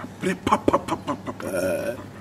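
A person's voice: a quick run of short syllables, then a drawn-out vocal sound held for about half a second near the end.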